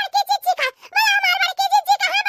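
A high-pitched cartoon character's voice talking quickly in short, rapid syllables.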